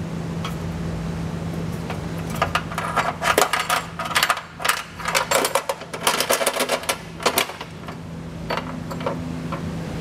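Carriage bolt and spacer block clicking and rattling against the inside of a steel frame rail as they are fed in on a fish wire. The quick run of clicks starts a couple of seconds in and thins out near the end, over a steady low hum.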